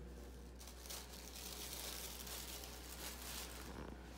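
Faint crinkling and crunching, from about half a second in until just before the end: seasoned pretzel sticks being taken from a foil-lined baking sheet and chewed.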